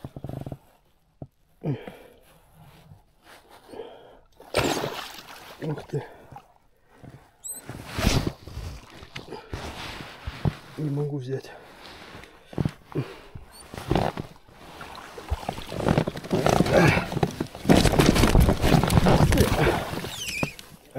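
A large pike, about 5–6 kg, thrashing and splashing at an inflatable kayak while the angler struggles to get it aboard, with irregular knocks and the rustle of waterproof clothing against the hull. The splashing is loudest and most continuous over the last four seconds.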